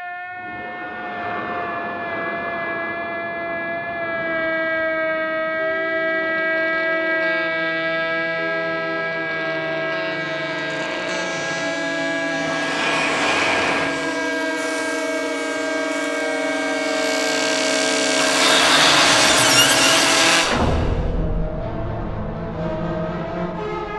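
Score music: long held, horn-like chord tones that shift slowly, with a hissing swell rising about halfway through. A bigger swell builds to the loudest point near the end, then breaks off into a low rumble.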